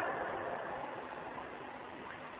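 Steady background hiss in a pause between a man's sentences, slowly fading.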